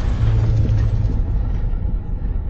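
Intro sound effect: a loud, deep, steady rumble, with a higher hiss fading away over the second half.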